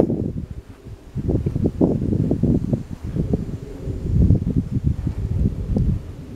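Wind buffeting the camera microphone: a gusty low rumble in uneven surges, starting about a second in.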